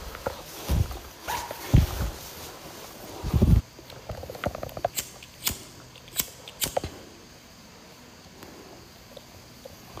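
Handling and movement noise in the dark: a few dull thumps in the first few seconds, then four short sharp clicks around the middle.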